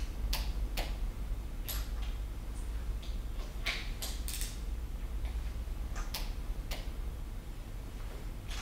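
Torque wrench clicking as it tightens the fork lowers' bottom screws to 6 Nm: about eight separate sharp clicks and metal ticks at irregular intervals, over a low steady hum.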